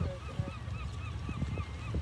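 A bird calling in a fast run of short, repeated notes, about five a second, over a low rumble and scattered knocks.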